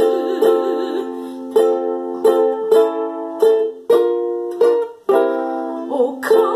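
A woman's sung note with vibrato ends about a second in. An instrumental interlude of the accompaniment follows: a string of chords, each struck or plucked and then fading.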